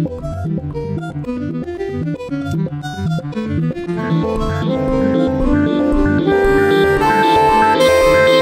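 Electronically processed saxophone over an electronic beat: quick short notes in the first half, then long held notes stepping upward in pitch from about four seconds in.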